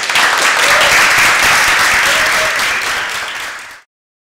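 Audience applauding, a dense patter of many hands clapping, which cuts off abruptly near the end.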